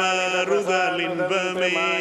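A mantra being chanted in long, steady, held notes, with brief breaks between phrases.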